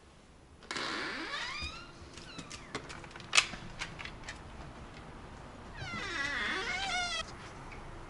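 A domestic cat meowing twice: a short call about a second in and a longer, wavering one near the end. A single sharp click falls between the two calls.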